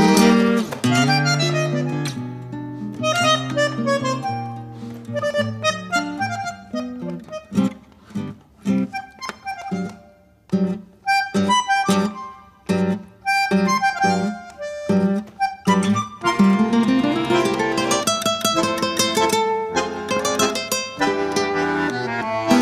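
Classical guitar and bandoneón playing a tango together. Held notes open the passage, then short, detached chords with gaps between them, then a rising run and flowing lines near the end.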